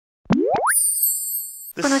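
Intro sound effect for an animated logo: two quick rising plops, then a bright high ringing tone lasting about a second that cuts off as speech begins.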